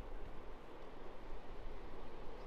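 Steady, even noise of ocean surf washing onto the beach.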